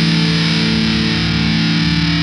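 Distorted electric guitar holding one chord, ringing steadily with no drums, in a punk rock track.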